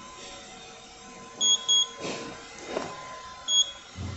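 Short, high electronic beeps: two in quick succession, then a third about two seconds later.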